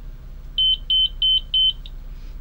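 Portable cardiac monitor/defibrillator giving its power-on beeps as it is switched on: four short, high, single-pitch beeps, evenly spaced about three a second, starting about half a second in.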